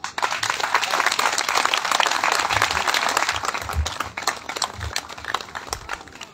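Audience applauding: dense clapping that starts at once and thins out over the last couple of seconds.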